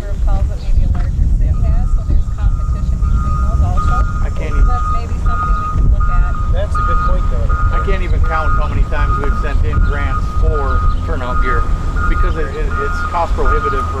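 Wheel loader's reversing alarm beeping repeatedly at one steady pitch over the low rumble of its diesel engine, starting about a second and a half in.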